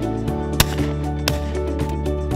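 Background music with two sharp shotgun shots over it, the first about half a second in and the second under a second later. The first shot is the louder.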